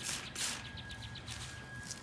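Plastic trigger spray bottle squirting watered-down tempera paint at paper: a short hiss about half a second in, followed by faint quick ticks.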